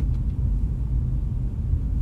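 Steady low rumble of a car in motion, heard inside the cabin: road and engine noise.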